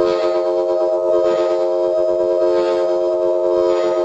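Amplified blues harmonica played through a Shure Brown Bullet harp microphone with a CR element, holding one long steady chord with a thick, organ-like tone.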